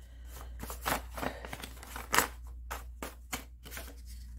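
A deck of tarot cards being shuffled by hand: irregular quick slaps and rustles of cards against one another, the sharpest about two seconds in.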